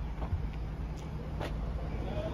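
A 2011 Mazda 3's engine idling: a low, steady hum with a constant low tone, and two faint clicks about a second and a second and a half in.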